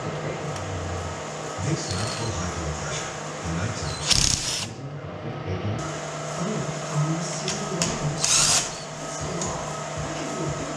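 Cordless drill/driver running in two short bursts, about four and eight seconds in, as it drives fasteners at the chassis bracket.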